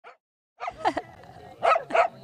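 Corgis barking in short sharp barks: a cluster of them just before a second in, and a couple more near the end.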